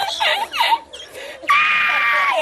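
A man laughing hysterically in high-pitched, wheezing fits, breaking into a long held squealing note about one and a half seconds in.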